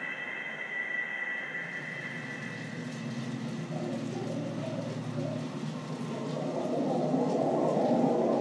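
Low, droning soundtrack with several steady low tones that grows louder toward the end, while a high ringing tone fades out in the first two seconds.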